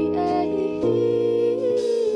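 Live band playing a slow instrumental passage: sustained keyboard chords over electric bass, with a melodic line sliding in pitch on top and a few drum and cymbal strikes.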